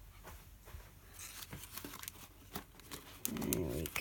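Paper pages and card of a handmade journal being handled, with light rustling and small clicks as the signatures are pressed into place. Near the end a short hummed voice sound.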